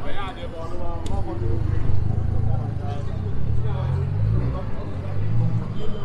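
Busy city square: passers-by talking in the crowd, with a low vehicle engine rumble that builds through the middle and fades near the end.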